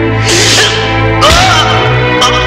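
Film background score with a steady low drone, cut by two sharp whip-like swishing hits about a second apart: fight-scene sound effects.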